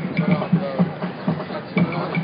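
Drums of a street march beating a quick, even rhythm of about five beats a second, with marchers' voices over them.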